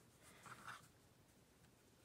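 Near silence, with a faint, brief rustle of hands moving quilting fabric on a cutting mat about half a second in.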